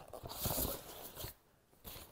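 Osprey 3-litre hydration bladder, a plastic reservoir with a solid back panel, sliding down into a backpack's fabric bladder pocket. It makes a rustling scrape of plastic against nylon with a few small knocks, which cuts off suddenly about a second and a half in.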